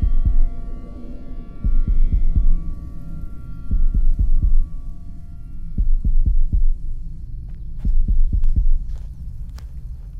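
Low, heartbeat-like throbbing pulse of a film soundtrack, about one pulse every two seconds, under a sustained chord that fades away by mid-way. A few faint clicks come in near the end.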